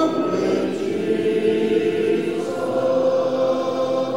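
A congregation singing a hymn together a cappella, unaccompanied voices in long held notes.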